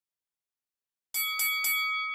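Silence, then about a second in a workout timer's bell chime, struck about three times in quick succession and ringing on: the signal that the 45-second exercise interval has started.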